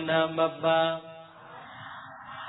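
A monk's voice intoning in a drawn-out, chant-like recitation, holding each syllable on a steady pitch. It breaks off about a second in, leaving a faint hiss.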